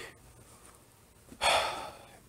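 A man's short audible breath through the mouth, about a second and a half in, after a quiet pause.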